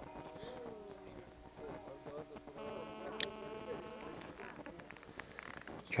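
Quiet background: faint distant voices over a low steady electrical hum, with a short sharp click a little after three seconds in.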